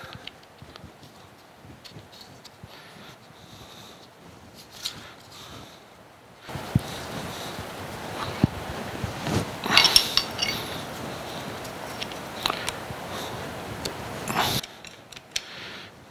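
Small metal clicks and clinks as the sector arms are fitted back onto a dividing head's index plate by hand. A louder stretch of scraping and handling noise with sharp clicks starts about six seconds in and stops shortly before the end.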